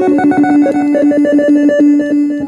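Vintage Japanese synthesizer played through a Behringer DD400 digital delay pedal: a fast, trill-like warbling figure, with a held low note and higher notes switching on and off several times a second, its notes repeated by the delay.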